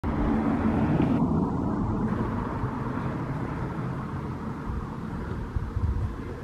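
Low rumble of a vehicle going by, loudest at the start and fading away.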